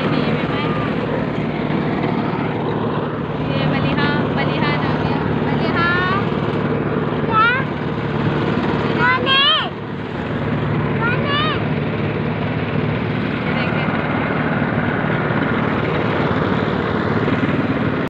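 Motorcycle engine running steadily while riding along a road, with wind noise. Over it, a run of short, high, rising squeals or calls comes from about four seconds in to about twelve seconds in.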